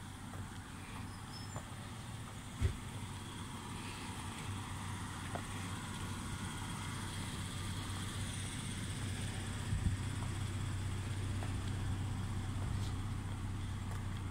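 Outdoor road ambience: a steady low rumble of traffic that swells slightly toward the end, with two light knocks, one early and one about two-thirds of the way through.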